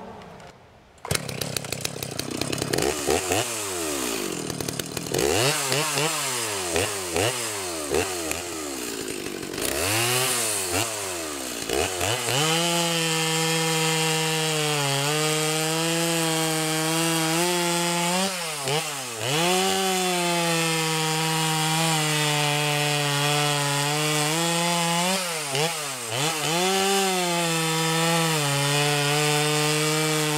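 Muffler-modified Stihl MS290 converted to an MS390 with an aftermarket engine, a two-stroke chainsaw. It comes in about a second in and is revved up and down several times, then held at full throttle cutting through a log, its pitch dipping briefly a few times as the chain bites.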